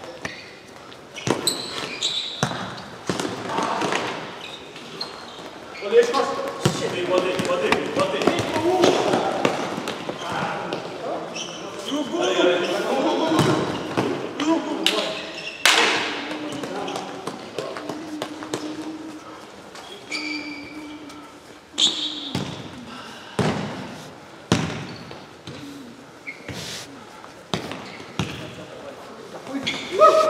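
Futsal being played in an indoor sports hall: repeated sharp strikes of the ball being kicked and bouncing on the court, with players calling and shouting to each other.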